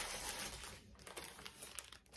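Plastic packaging crinkling as it is handled, irregular and fading off near the end.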